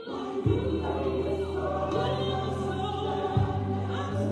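Gospel choir singing with instrumental accompaniment, the held bass notes changing every second and a half or so, with strong accents about half a second in and again near the end.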